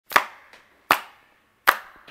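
Three sharp hand claps, evenly spaced about three-quarters of a second apart, each with a short ringing tail: a count-in just before the band starts.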